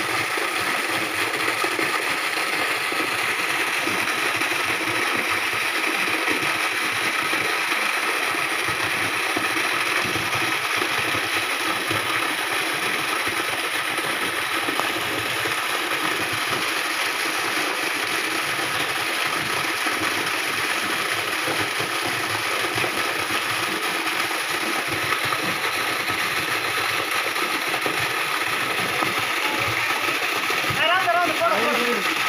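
A water pump's motor running steadily, with no change in pace.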